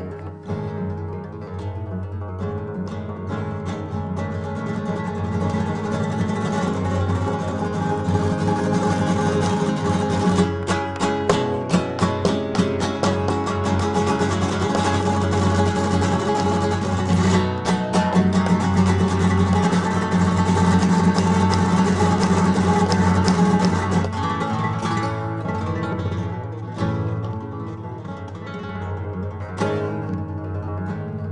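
Solo flamenco guitar playing a tarantas, with no other instruments. The music builds to fast, dense runs of rapidly repeated strokes through the middle and is loudest there, then eases off in the last few seconds.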